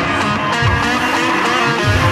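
Background music with guitar, mixed with drift cars' engines revving up and down several times as they slide.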